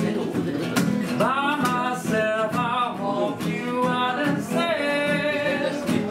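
Acoustic guitar strummed to accompany a voice singing a song, the sung notes held and gliding between pitches.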